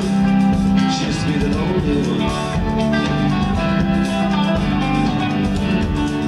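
Live rock band playing an instrumental passage with no singing: electric guitar lines over a steady drum beat.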